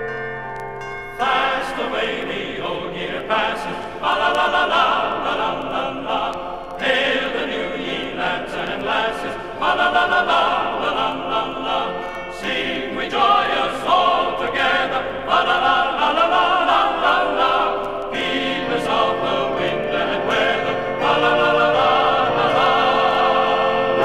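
A choir singing a Christmas carol in regular phrases, coming in about a second in after a brief plucked-string instrumental passage.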